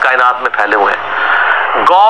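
Only speech: a man talking, with a faint steady low hum underneath.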